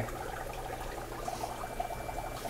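Steady aquarium-room background: a low hum with bubbling, trickling water from the tanks' filtration.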